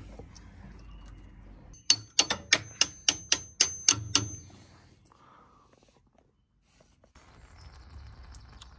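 Hammer knocking a steel Panhard rod bolt into its mount. There are about ten sharp metal-on-metal taps, about four a second, starting about two seconds in, each with a short high ring.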